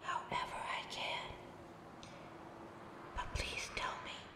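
A woman whispering in two short phrases, one in the first second or so and one near the end.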